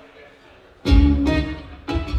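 Live rock band kicking into a song about a second in: a loud guitar chord struck together with a drum and cymbal hit, fading a little, then another accented hit near the end. Before the entry there is only a low room murmur.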